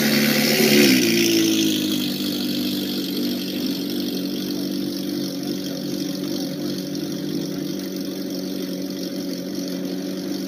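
Ferrari 458 Italia's naturally aspirated V8 through an IPE F1 exhaust, pulling away. The engine note drops in pitch about a second in, then holds a lower, steady note that slowly fades as the car moves off.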